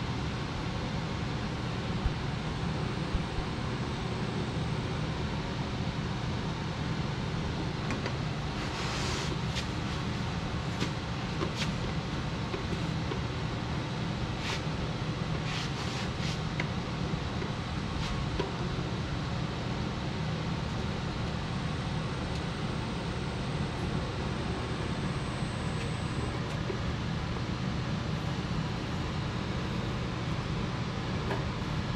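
Baileigh electric bead roller running with a steady low drone as a 16-gauge aluminum panel is fed through its dies, with a few light clicks and taps of the sheet against the machine.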